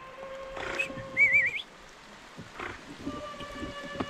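Rain falling on a river, with a short wavering whistle-like call about a second in and a fainter one near the end, over a faint steady hum.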